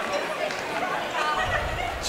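Crowd chatter in a large arena: many voices talking over one another at a steady, moderate level, with no single voice standing out.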